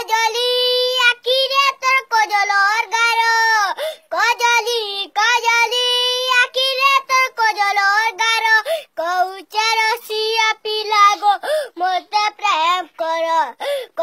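A young boy singing an Odia song unaccompanied, in a high voice, with long held notes and short breaks for breath between phrases.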